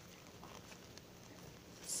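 Quiet room tone with a few faint, soft handling sounds.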